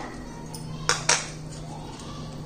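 Metal ladle stirring thick milk in a steel pan, with two sharp knocks of the ladle against the pan close together about a second in, over a steady low hum.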